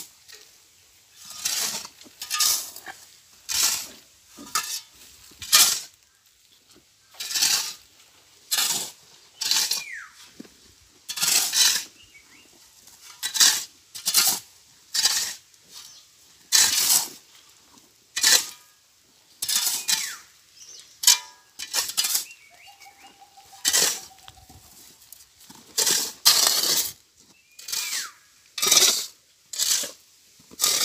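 Steel shovel blades scraping and scooping through a heap of sand, gravel and cement, two shovels mixing concrete by hand: a run of rough, gritty scrapes, roughly one a second.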